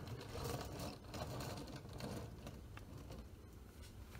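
Small wheels of a miniature doll-scale pinboard frame rolling and scraping across a surface in a few uneven pushes, a low rumble with light rattling.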